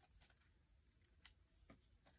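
Near silence: room tone with a few faint ticks of cardstock being handled.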